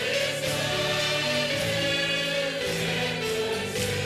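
Choral music: a choir singing long held notes over a steady accompaniment.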